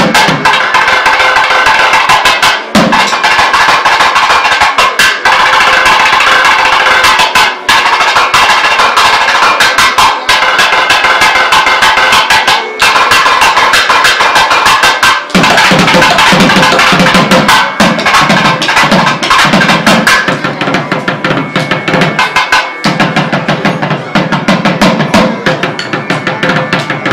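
Two thavil drums played together in a fast, dense rhythm of sharp stick and thimbled-finger strokes over a steady drone. About halfway through the deeper strokes come in more strongly.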